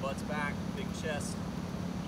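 Steady low hum, typical of air-conditioning condenser units running, with a man's voice heard briefly over it.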